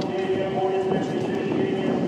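Several voices chanting Orthodox church singing in held notes that step from pitch to pitch, more than one part sounding at once, with scattered light clicks.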